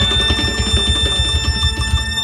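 Clarinet holding one long high note over a steady drum beat from the dhol and band: the held closing note of a lively Armenian dance medley.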